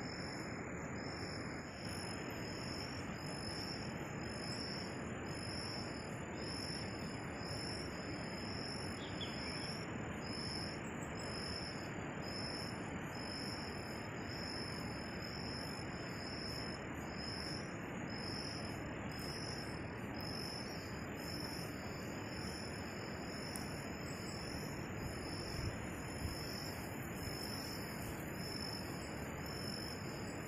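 Cricket chirping in an even rhythm, about one and a half chirps a second, with a continuous high trill alongside. A steady hiss runs underneath.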